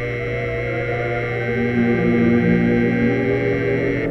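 A clock radio's electric alarm buzzer sounding a steady low buzz over soft radio music; the buzz stops suddenly at the end as the radio is switched off.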